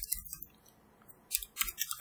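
Computer keyboard keystrokes: a few clicks, a pause of just under a second, then a quicker run of clicks.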